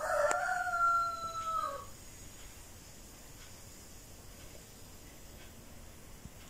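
A rooster crowing once: a single drawn-out call of about two seconds that dips in pitch at the end.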